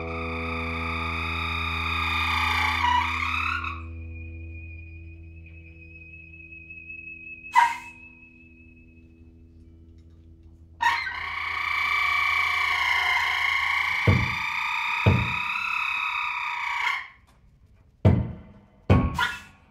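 Free-improvised music: a low, distorted electric-guitar drone holds under high sustained tones that break off about four seconds in and return loudly about eleven seconds in. A thin high whistle-like tone fades out midway, a single sharp click sounds near the middle, and two low thumps come near the end as the drone stops.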